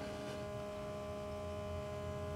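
Steady electric hum made up of a few fixed tones, holding level throughout.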